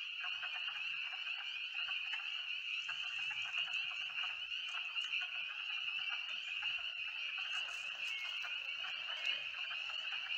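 A dense chorus of spring peepers: many frogs giving high, piping peeps that overlap into a continuous shrill ring. These are male peepers calling to attract mates in a spring breeding marsh.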